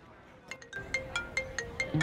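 A mobile phone ringtone: a quick melody of short, bell-like notes, about five a second, starting about half a second in.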